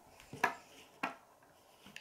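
Two light clicks of plastic LEGO pieces being handled, one about half a second in and another about a second in.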